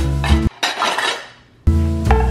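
Background music breaks off about half a second in, and a short clatter of kitchenware (pans and utensils) fills the gap, fading out before the music comes back near the end.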